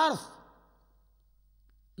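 A man's speaking voice ends a word on a rising pitch just after the start and fades out, followed by a pause of near silence with only a faint low hum.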